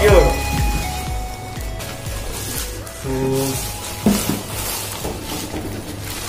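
Electronic background music fading out in the first half second, then the rustle and crinkle of plastic wrapping and cardboard packaging being handled, with a short voice sound about three seconds in.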